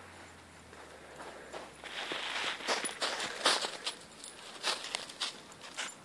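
Footsteps in snow: an uneven run of steps that starts about two seconds in, after a quieter stretch.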